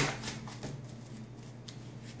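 Faint rustling and a few light clicks from something being handled, with one sharp click right at the start.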